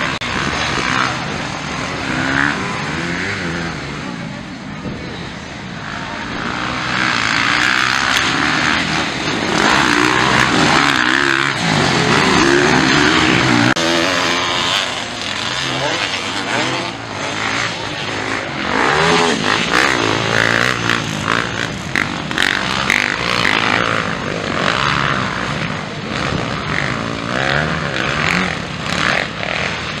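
Several motocross dirt bikes racing past, their engines revving up and falling back again and again, loudest in the middle stretch.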